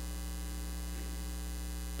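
Steady low electrical mains hum, unchanging, with nothing else heard.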